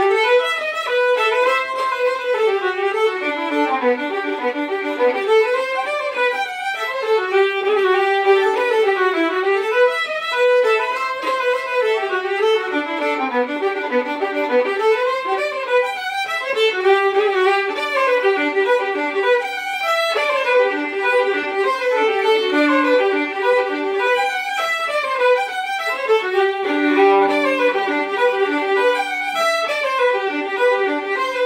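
Two fiddles playing a hornpipe together, a quick, continuous melody of bowed notes with no pause.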